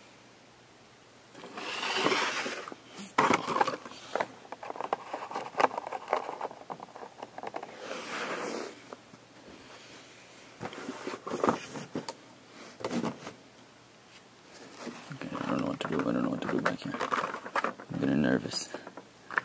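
Blister-packed Hot Wheels cards being handled and set down on a table: irregular bursts of rustling card and plastic, with sharp clicks and taps in between.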